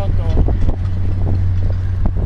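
Wind buffeting the camera microphone, a steady low rumble, with faint voices in the background.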